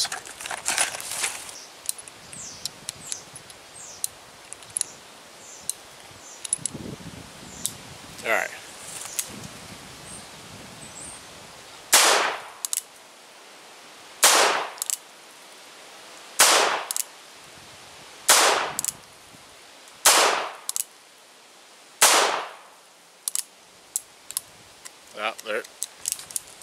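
Cimarron Lightning .38 Special revolver: light clicks and rattles as cartridges are loaded into the cylinder, then six shots fired about two seconds apart, each trailing off briefly. A few small clicks follow as the cylinder starts to lock up, the fired brass dragging against the frame.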